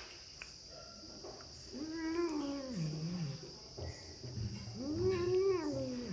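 A tabby kitten gives two long, drawn-out meows, each rising and then falling in pitch. The first comes about two seconds in and sinks to a low note; the second comes near the end.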